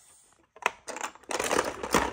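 Plastic Lego bricks clicking and rattling as pieces are handled and lifted out of a Lego model, starting about half a second in and growing busier.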